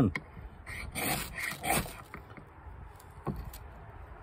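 A ferrocerium rod scraped with a steel striker, several quick strokes in the first two seconds, then quieter, throwing sparks onto fatwood shavings that have not yet caught.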